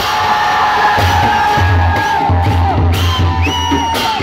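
Dhime drums (Newar double-headed barrel drums) beaten with clashing cymbals, while a crowd whoops and cheers loudly over them. Long drawn-out yells fall away at their ends, and the drum beats come and go underneath.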